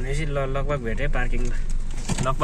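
Voices inside a car chanting a repeated phrase in a low, sing-song way, over the steady low hum of the car moving slowly.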